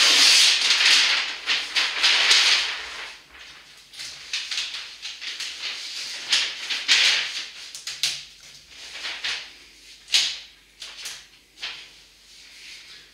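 A large flip-chart paper sheet rustling loudly as it is handled and turned upside down, followed by a felt-tip marker scratching across the paper in short strokes as faces are drawn.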